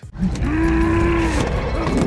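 A man lets out one long cry held at a steady pitch, about a second long, over a low rumble of film sound. Shorter grunts follow near the end.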